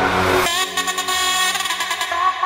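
Full-on psytrance track: a rising noise sweep that cuts off abruptly about half a second in, then a stuttering, chopped synth section with the bass dropped out.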